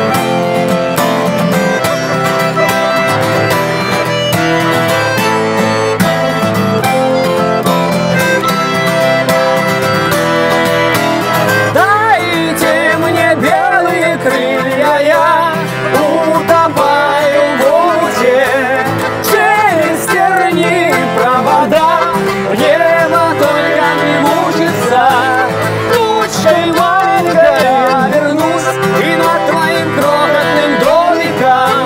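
Bayan (Russian button accordion) and acoustic guitar playing a song together, held accordion chords over strumming. About twelve seconds in, a man's voice starts singing over them.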